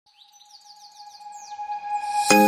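A rapid run of short, falling bird-like chirps over a steady held tone, growing louder as it fades in toward the start of music.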